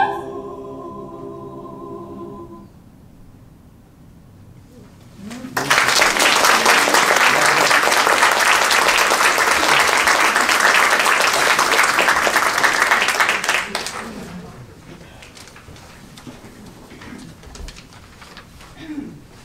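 An a cappella choir's final chord, the top voice cut off and the lower voices held for about two more seconds. After a short hush, audience applause starts about five seconds in, lasts about eight seconds and dies away into quiet room rustle.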